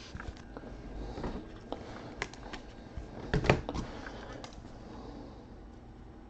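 Light clicks and taps of plastic trading-card holders being handled and set down on a tabletop, with a louder knock about three and a half seconds in.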